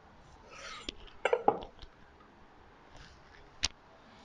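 A kitchen knife slicing smoked venison loin on a wooden cutting board: a short scrape of the blade, then a quick cluster of knocks of knife and meat against the board about a second in, and a single sharp click near the end.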